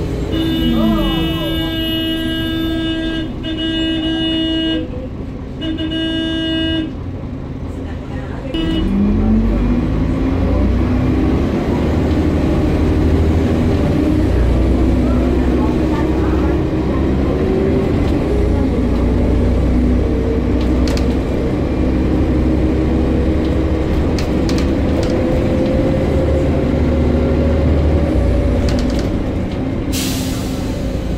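Onboard bus engine and drivetrain with a steady low rumble. For the first seven seconds a held tone sounds three times, with a short break between each. From about eight seconds in, the engine and transmission note rises steadily in pitch as the bus pulls away and gathers speed.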